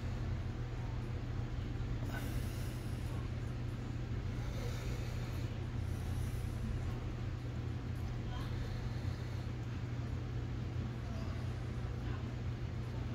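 A steady low hum, with faint rustles of hands handling thread and materials at a fly-tying vise about two and five seconds in.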